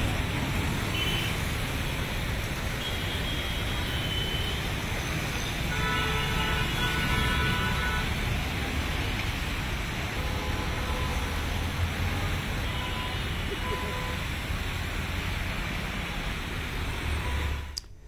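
Road traffic in flooded streets: a steady rush of engines and tyres driving through standing water, with a low rumble underneath. A few short tonal sounds come about six to eight seconds in.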